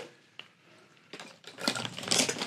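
Small containers and camping kitchen items being handled and set down among packed gear: one light click about half a second in, then a run of light clicks and clatter from about a second in.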